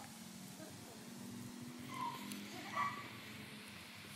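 Quiet background: a few faint distant voices about two to three seconds in, over a low steady hum.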